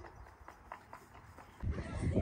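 A horse's hooves knocking on a horsebox's loading ramp: a few faint, irregular knocks. A louder low rumbling noise comes in near the end.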